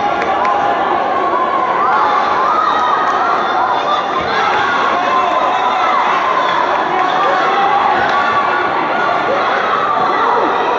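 Spectators and ringside supporters shouting and cheering during a kickboxing bout, many voices calling out over each other at once.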